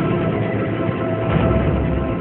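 Background film score: a sustained droning synth pad with a few held tones over a steady low rumble.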